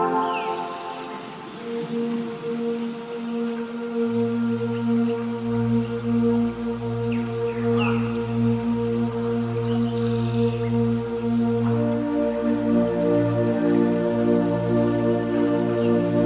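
Soft new-age background music of sustained, slowly changing chords, with a low bass note entering about four seconds in. Short bird chirps sound over it throughout.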